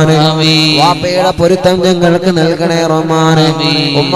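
A man's voice chanting a supplication in long, held, melodic tones, with a steady low drone underneath.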